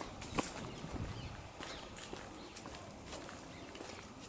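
Faint rustling and light snapping of hedge twigs and leaves as someone pushes in among the branches, a scatter of soft clicks over a quiet outdoor background.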